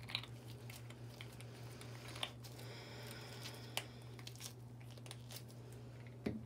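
Quiet room tone: a steady low hum with a few faint scattered clicks, and a faint high whine for about a second and a half in the middle.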